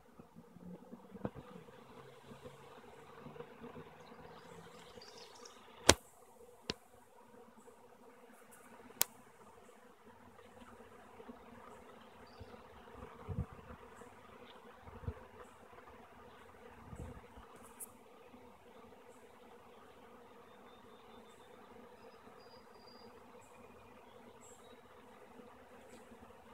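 Faint, steady buzzing of a honey bee swarm flying around and moving into a wooden swarm trap box. Two sharp clicks stand out, about six and nine seconds in, and a few low thumps come later.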